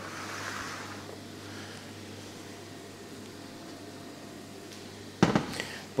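Steady low kitchen background noise with a faint hum, then a sudden sharp clatter of something being set down or knocked on the worktop about five seconds in.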